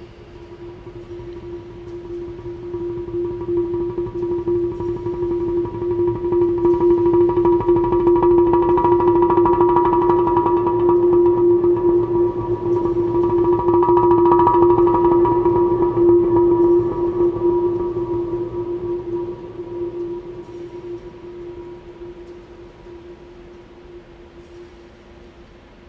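Large Korean earthenware jars (hangari) played with soft-headed mallets in a fast roll, blending into one sustained ringing tone. It swells from soft to loud, peaks around the middle, then slowly dies away, resonating in a steel-walled dome.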